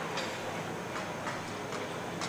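Steady static hiss broken by a handful of irregular sharp clicks, in the manner of a glitch sound effect.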